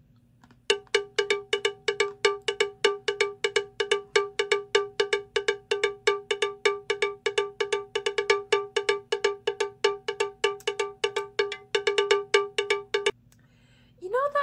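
A sound effect added in editing: a single bright, bell-like note struck rapidly and evenly, about five or six times a second, starting about a second in and stopping about a second before the end.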